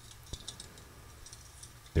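A quiet pause with a few faint, light clicks, one slightly stronger about a third of a second in.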